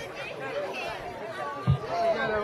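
Indistinct crowd chatter, several people talking at once, with a single low thump near the end.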